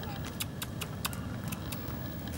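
Footsteps crunching on gravel, a quick run of sharp crunches about four a second, over a steady low rumble.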